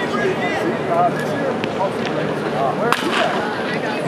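People talking, with one sharp crack about three seconds in: a wooden baseball bat hitting a ball during batting practice.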